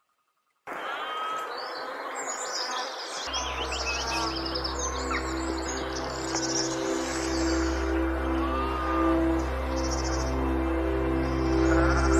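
Near silence, then about a second in, birds start chirping and calling over a steady background hiss. A few seconds later, soft ambient synth music with long held low notes comes in beneath the birds.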